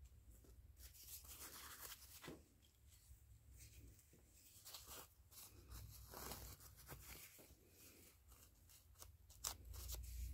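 Near silence, with faint, scattered rustles and light ticks of hands handling a paper card.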